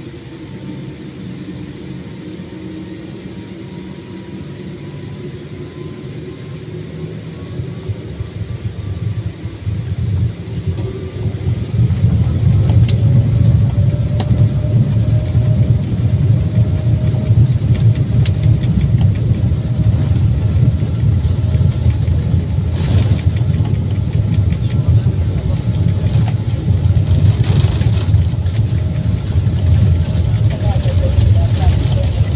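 Boeing 787-8 airliner heard from inside the cabin as it begins its takeoff: the jet engines spool up over several seconds with a faint rising whine, then settle into a loud, steady low rumble as the aircraft accelerates down the runway.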